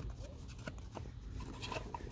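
Faint handling noise from a gear shifter assembly being picked up and turned over in the hand: a few small, sharp clicks over a low hum.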